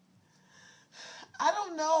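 A woman draws in a sharp, gasping breath about a second in, then speaks in a distressed voice.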